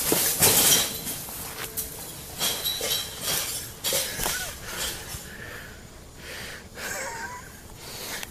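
A thrown trash bag landing with a crash and clinking of glass, loudest in the first second, followed by smaller scattered knocks and clinks that die away after about four seconds.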